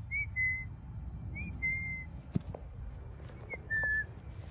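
A clear two-note whistle, a short rising note and then a longer held note a little lower, repeated four times.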